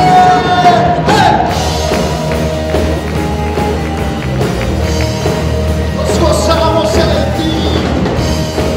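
Live worship band playing: drum kit, bass, electric guitar and keyboard. A voice holds a long note that ends about a second in, and sings held notes again around six seconds in.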